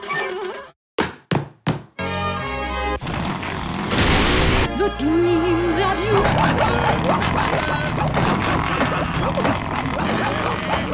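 Cartoon soundtrack: after a moment of silence, three sharp thunk-like hits about a third of a second apart, then loud orchestral music with a brief crash about four seconds in.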